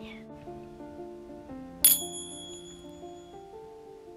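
Gentle background music with sustained notes. A little under two seconds in, a single bright bell ding rings out and fades over about a second and a half.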